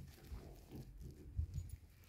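A white wardrobe door being pulled open by its handle: faint, soft low knocks and rustles.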